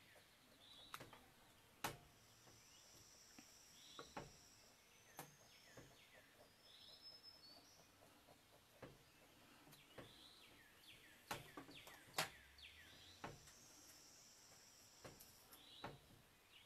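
Quiet room tone with faint birds chirping in short falling notes, and a scattering of light sharp ticks from a crowquill dip pen's steel nib scratching short strokes on paper.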